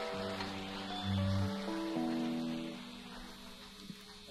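Electric organ playing a short phrase of held, chord-like notes that change in steps, with a deep bass note about a second in. The sound dies away in the last second.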